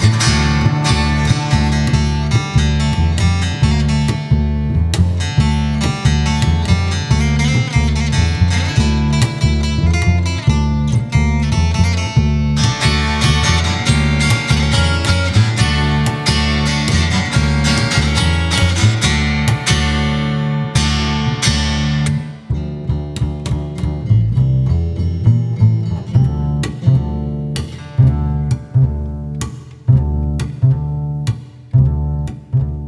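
Instrumental passage of acoustic guitar and double bass played together, the guitar strumming over a steady bass line. About two-thirds of the way through the guitar thins out and the separate double-bass notes come to the fore.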